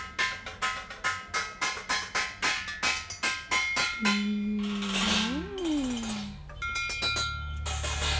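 Metal pots and plates struck with sticks as an improvised drum kit: a fast, even rhythm of ringing metallic hits. About halfway the hits give way to a held low tone that swoops up and back down under a hissy crash-like wash, and a few more ringing hits come near the end.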